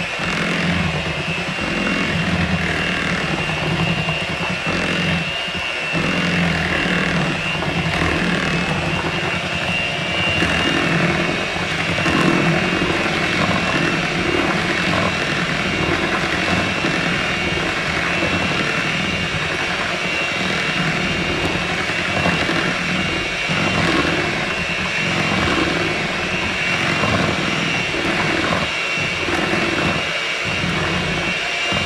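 Electric hand mixer running steadily with a high whine, its beaters churning through a thin pie-filling batter.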